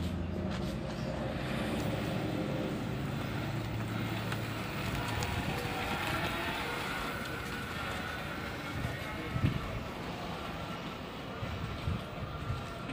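Home-built 48 V, 750 W BLDC electric motorcycle riding off down a lane, with a faint steady whine and a sharp knock about nine and a half seconds in.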